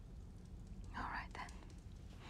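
A person's close, breathy exhale about a second in, in two short parts, over a low steady hum.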